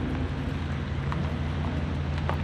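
A convoy of heavy diesel trucks rolling slowly past, engines running as a steady low drone under an even hiss.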